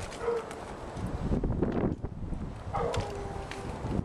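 A dog barking, two short pitched calls: one just after the start and another about three seconds in. A low rumble on the microphone fills the gap between them.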